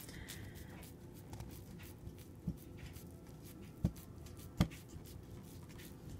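Faint handling noises, small clicks and rubbing, with three light knocks a second or so apart in the middle, the third the loudest.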